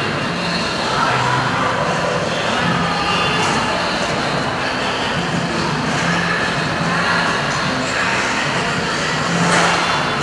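Steady rink noise: figure-skate blades carving and scraping across the ice in a reverberant hall, with a sharper scrape near the end.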